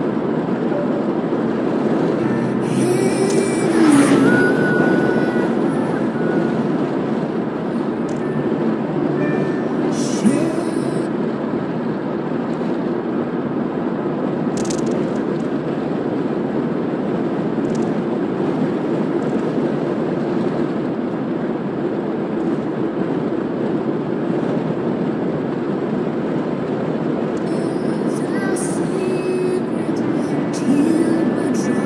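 Steady road and tyre noise of a car cruising on an open highway, heard from inside the cabin. About four seconds in it swells briefly with a falling pitch, as an oncoming truck passes.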